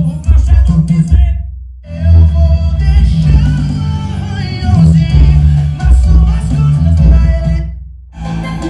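A music track with a heavy bass beat and vocals, played at about 1000 W through Eros Target Bass 15-inch car-audio woofers in boxes. The music cuts out briefly about 1.5 s in and again just before the end.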